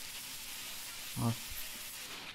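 Steady background hiss with no machine running, and one short spoken word about a second in.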